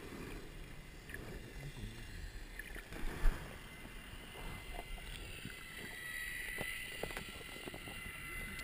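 Muffled underwater water noise picked up by a submerged GoPro in its waterproof housing: a low, steady rumble and sloshing of moving water, with one sharp thump about three seconds in.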